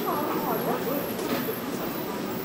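City street ambience: indistinct voices of passersby talking over a steady background of traffic noise.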